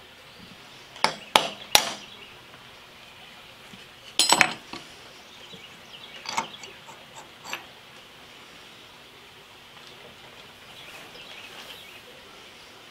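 Metal parts being handled on a horizontal milling machine: a few sharp clinks and knocks about a second in, a louder cluster past the middle and two more later, as a steel piece is worked off the spindle nose.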